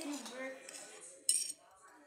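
A brief, high, bright metallic clink with a short ring, about a second and a quarter in, preceded by a faint murmured voice.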